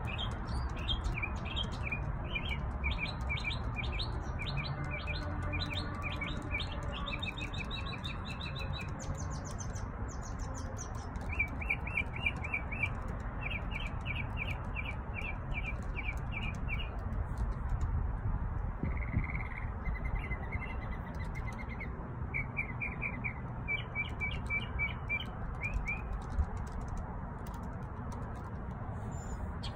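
Backyard songbirds singing: several phrases of rapid, evenly repeated high chirps, each phrase lasting a few seconds with short pauses between, over a steady low background rumble.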